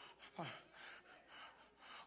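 Near silence: a man's brief hesitation sound "uh" about half a second in, then faint breathing.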